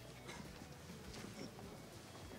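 Faint, irregular footsteps of a group walking in hard-soled shoes on stone paving.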